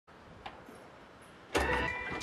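Faint hiss, then a sudden loud hit about one and a half seconds in as music starts.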